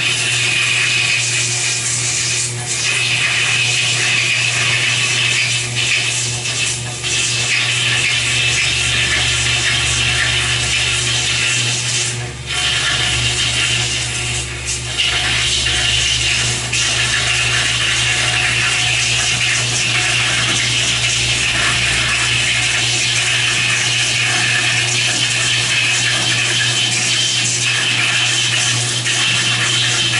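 A gouge cutting into a large poplar blank spinning on a big wood lathe, more than three feet across. It tears off thick ribbons of shavings with a steady, loud hiss, over a steady low hum from the lathe.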